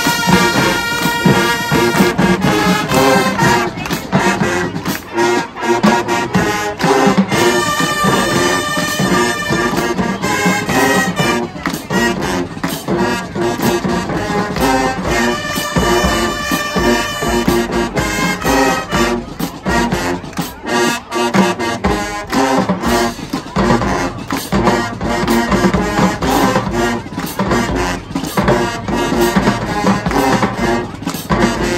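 High school marching band playing a loud brass tune, with sousaphones, trumpets and trombones over drum hits in a steady rhythm.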